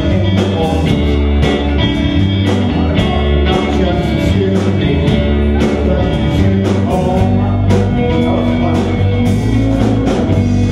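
A rock band playing live: electric guitars, bass guitar and drum kit at a steady beat.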